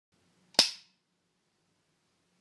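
Film clapperboard's wooden clapstick snapped shut once: a single sharp clap about half a second in that dies away quickly, with a little small-room echo.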